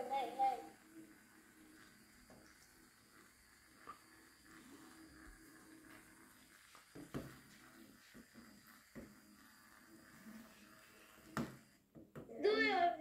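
A child's voice briefly at the start, then quiet room tone with a few soft, short knocks from small plastic LEGO parts being handled on a tabletop.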